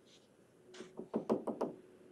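Stylus tapping on a tablet screen, a quick run of about six or seven light taps over less than a second as a dotted line is drawn dot by dot.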